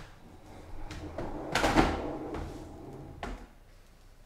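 Cardboard boxes and packaging being handled: a knock at the start, a louder scraping rustle that peaks just before the middle, and another knock near the end.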